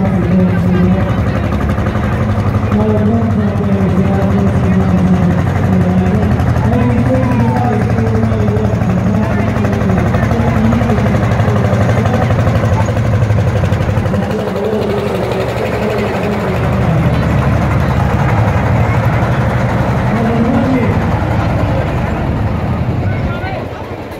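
Lanz Bulldog tractor's single-cylinder hot-bulb two-stroke engine running steadily as it drives slowly past, with voices in the background.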